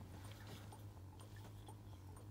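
Near silence: room tone with a low steady hum.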